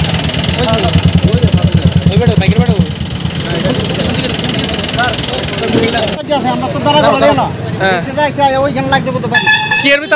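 A vehicle engine idling with a fast, even throb under the voices of a crowd; the throb stops about three seconds in. Later people talk, and a vehicle horn sounds briefly near the end.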